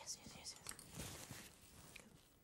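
A woman's soft, breathy half-whisper, faint and without clear voice.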